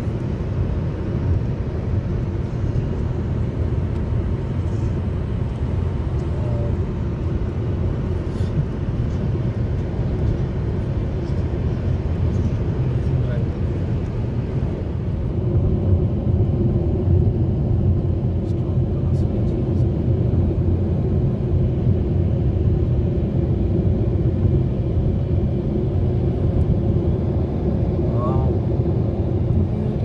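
Steady road and engine noise inside a car cruising on a highway, a low rumble that gets a little louder about halfway through.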